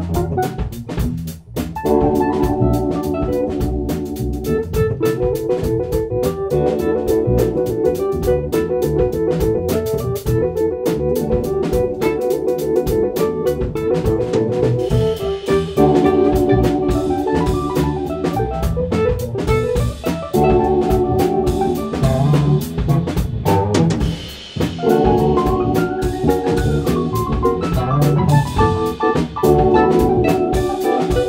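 Instrumental band playing live: drum kit, electric bass, electric guitar and keyboard, with held keyboard chords over a busy drum groove. The band drops out briefly twice, about a second and a half in and again near the end.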